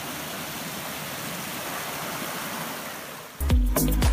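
Stream water spilling over a small rocky cascade, a steady rushing splash. Background music with a heavy beat cuts in near the end.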